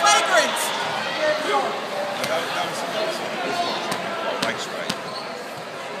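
A basketball bounced a few times on a hardwood gym floor, short thuds the last two about half a second apart, over the chatter of a crowd in the stands.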